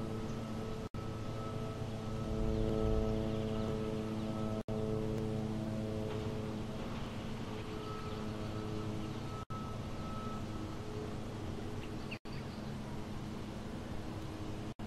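Distant engine hum with several steady pitches, swelling about two to four seconds in, over open-air background noise. The sound cuts out completely for an instant four times, and there are faint high chirps near the end.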